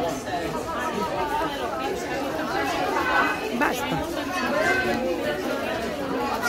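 Indistinct chatter of several voices talking over one another in a busy shop.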